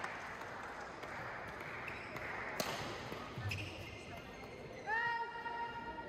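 Badminton hall ambience between rallies: a single sharp tap about two and a half seconds in, and near the end a short high squeal that rises and then holds for about a second, like a shoe squeaking on the court floor.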